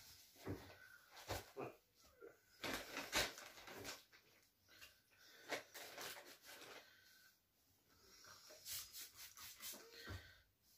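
Faint, intermittent rustling and rubbing of grocery packaging being wiped down with disinfectant wipes by gloved hands, with a few short hissy bursts, the brightest about three seconds in and near the end.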